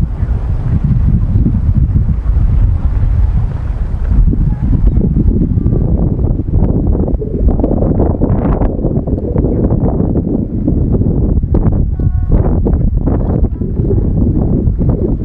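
Wind blowing across the camera microphone: a loud, steady low rumble. A few faint voices come through in the second half.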